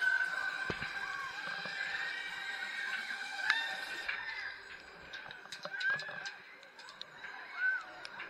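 Riders' drawn-out screams and whoops on a spinning Huss Booster fairground ride, over fairground music. The voices fade after about four seconds.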